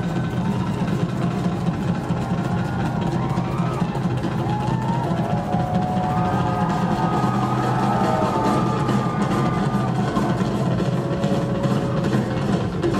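Rock drum kit played live in a drum solo, heard from the audience, with audience voices shouting over it.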